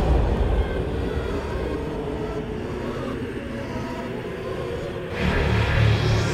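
Dark ambient horror soundscape: a low rumbling drone with faint steady tones above it, swelling louder about five seconds in.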